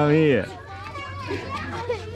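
Young children playing and chattering close by: a loud voice calls out at the very start, then quieter mixed voices follow.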